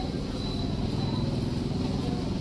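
Steady low background rumble with no clear events, like a motor or fan running.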